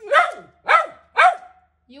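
Small long-haired white dog barking three times, about half a second apart, each bark sharp and falling in pitch. The owner takes the barking as asking to go out.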